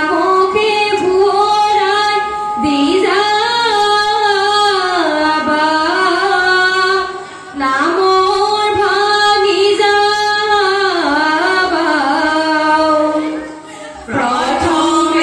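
A woman singing a Jeng Bihu folk song through a microphone and PA, in long held phrases that break off briefly about seven seconds in and again near the end.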